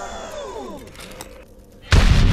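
Film sound effects: a whistling tone falling steeply in pitch and fading over the first second, a brief lull, then a sudden loud explosion near the end as a tank blows up.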